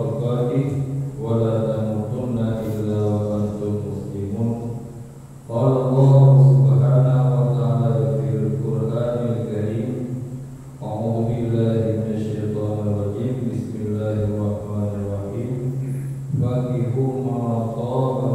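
A man's voice reciting Arabic in a melodic chant over a microphone, in long held phrases with short breaks about every five seconds: the recited part of an Islamic marriage sermon (khutbah nikah).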